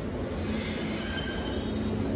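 Room noise in a restaurant dining room: a steady low hum with faint high-pitched squealing tones over it in the middle.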